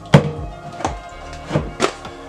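A metal spoon knocks against a plastic tub while scooping brown sugar: four sharp knocks, the first the loudest, with background music playing throughout.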